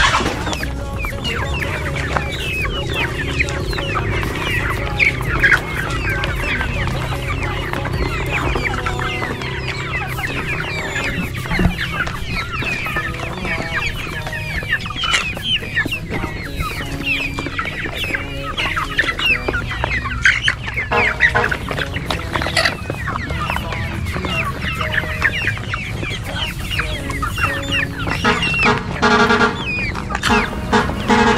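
A large flock of young chickens clucking and peeping continuously as they feed, with many short high calls overlapping.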